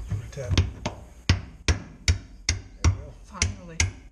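Hammer tapping a bolt through a front leaf-spring eye, about eight sharp metal taps at an even pace of roughly two and a half a second.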